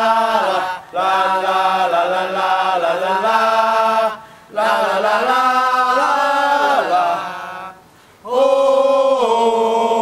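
Voices singing a Thai cheer song in a chant-like style, in long held phrases with short breaks about one, four and eight seconds in.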